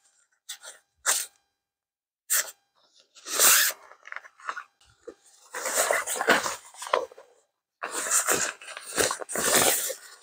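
Tent footprint fabric rustling as it is pulled from its stuff sack and unfolded by hand: a few short scuffs, then longer rustling from about three seconds in.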